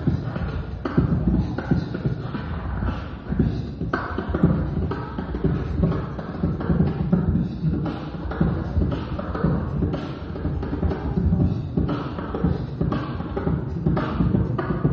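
A solo beatboxer performing into a handheld microphone, amplified: an unbroken run of vocal drum and bass sounds in a steady rhythm, heavy in the low end.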